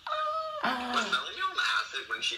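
A person's high-pitched, wordless squeal, held for about half a second, followed by more short, wordless vocal sounds.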